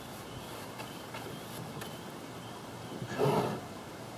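A short breathy sound from a person, about three seconds in, over low steady background noise with a few faint clicks.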